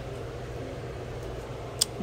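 Steady low background hum of an indoor hall, like a fan or air handling, with one brief sharp click near the end.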